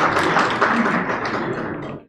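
Audience applauding, many hand claps blending into a dense patter that eases off slightly, then cuts off suddenly at the end.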